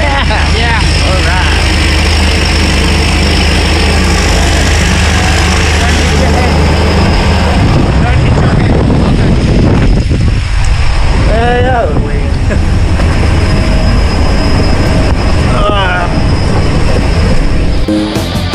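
Jump plane's propeller engines running loudly as the aircraft is boarded. A few brief shouts rise over the noise.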